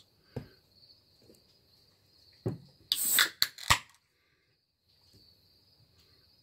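Beer can and glass handled for a pour: a sharp knock about two and a half seconds in, then a short hissing burst with a few sharp clicks. Faint steady cricket chirping runs underneath.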